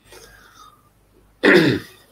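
A man clearing his throat once, a short burst about a second and a half in that falls in pitch.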